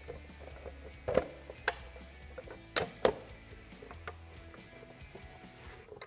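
Hard plastic knocks and clicks as an Oracle Lighting LED mirror cap is handled and lined up against a Ford Bronco side-mirror housing. There are a few sharp taps in the first half, over soft background music with a low bass line.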